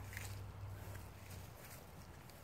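Faint footsteps over a low steady rumble.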